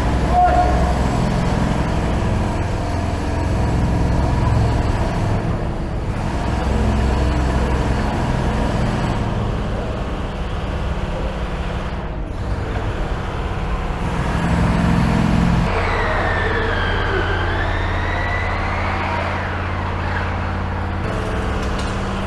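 Steady drone of construction machinery running in a concrete tunnel. Near the end a higher whine falls and then rises again in pitch.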